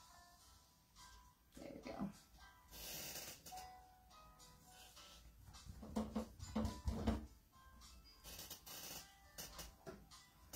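Quiet background music with faint, irregular dabbing, rustling and soft knocks as a sea sponge loaded with acrylic paint is tapped against a canvas.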